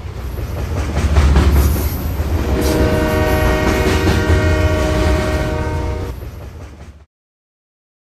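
A train rumbling past with its horn sounding a chord of several tones from about two and a half seconds in, the whole sound fading out about seven seconds in.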